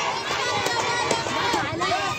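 A crowd of protesters marching and shouting in the street, many voices overlapping at once.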